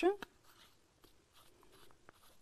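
A spoken word ends just at the start, then faint rustling and a few small clicks from a plastic bottle of white acrylic paint being handled.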